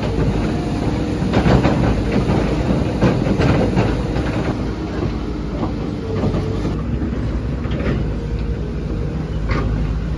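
Heavy machinery running steadily, with a steady engine hum under irregular metallic clanks and knocks that are busiest in the first few seconds.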